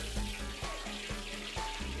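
Deep-frying oil sizzling in a large pot as a whole fried red snapper is lifted out with tongs, oil dripping back into the pot. Background music with a steady bass runs underneath.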